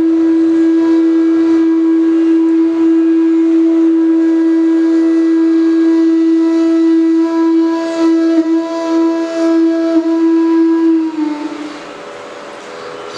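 Bansuri (bamboo flute) holding one long steady note for about eleven seconds, dipping slightly in pitch and stopping near the end.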